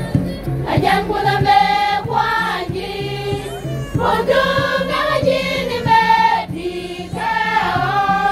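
A large women's choir singing a gospel song together, long held notes in phrases with brief breaths between them.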